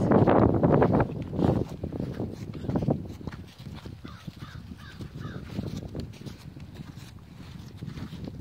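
A horse snuffling and breathing at a hand near the start, then hoofsteps and footsteps on dry grass as the horse walks alongside. A crow caws about four times a little after the middle.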